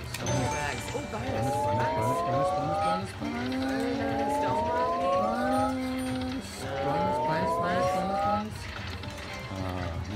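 Aristocrat 5 Dragons slot machine playing its free-games sound effects: three rising electronic glides of a couple of seconds each, over a steady low casino hubbub.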